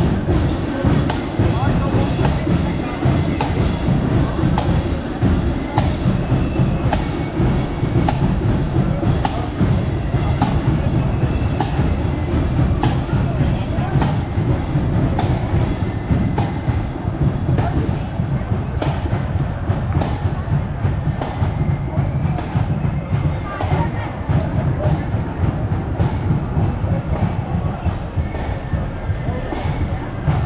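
Marching band playing as it passes, its drums keeping a steady march beat of evenly spaced strikes.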